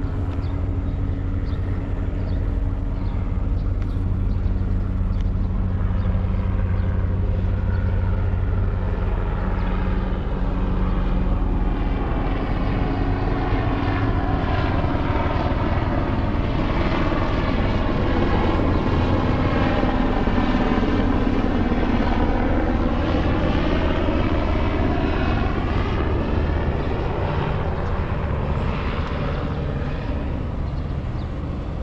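An aircraft passing overhead: its engine noise swells to a peak a little past the middle and then fades, with a sweeping, phasing whoosh as it goes over.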